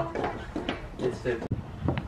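Faint, indistinct talking over low outdoor background noise, broken off abruptly about one and a half seconds in.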